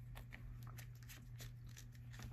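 Faint small clicks and light scraping of a metal M12 connector's coupling nut being turned by hand onto the threaded port of a passive distribution block, over a low steady hum.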